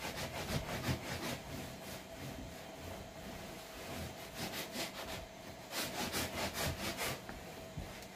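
Cloth rag rubbing wood oil into an old wooden tabletop in back-and-forth wiping strokes, quickest and loudest a little past the middle.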